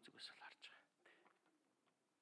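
A man's voice trails off in a few quiet, breathy words during the first half-second or so, then near silence: room tone.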